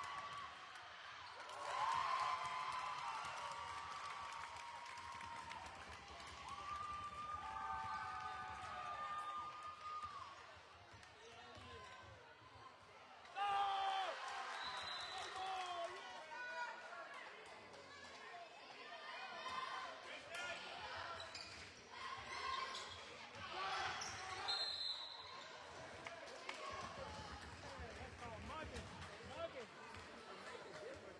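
A basketball dribbling on a hardwood gymnasium floor during play, with shouting voices from players and spectators rising and falling around it.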